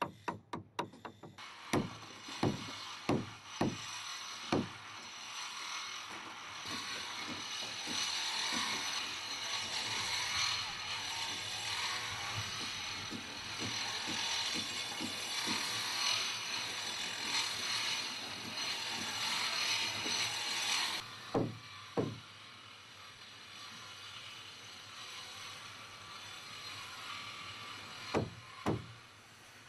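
A steel chisel driven into a boat's wooden frame with a hammer: five or six sharp blows in the first few seconds. Under and after them runs a long, dense, rapid scraping of wood being worked by hand, which stops suddenly about two-thirds of the way in and is followed by two more blows.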